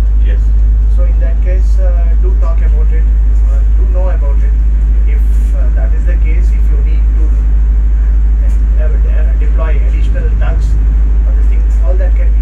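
A man talking over the loud, steady low drone of a boat's engine, heard inside the wheelhouse.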